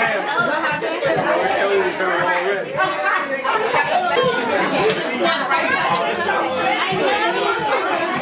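Many people talking over one another in a room: steady, indistinct overlapping chatter with no single voice standing out.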